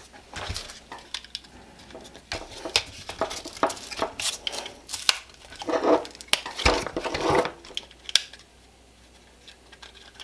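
Plastic belt clips of magazine pouches being snapped onto a nylon duty belt: a run of sharp plastic clicks and snaps with handling and rubbing of the webbing, stopping about two seconds before the end.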